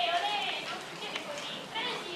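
High-pitched voices calling and talking, the loudest sound, with a couple of short soft knocks underneath.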